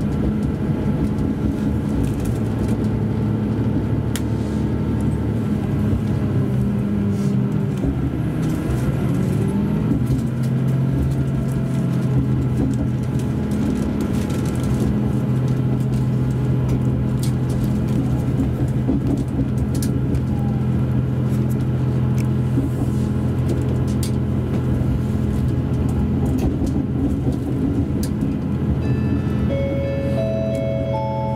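KiHa 283 series tilting diesel railcar's engine running under power, heard from inside the car with the hum of the running train. The engine note falls in pitch about eight seconds in and then holds steady lower. Right at the end an onboard announcement chime begins.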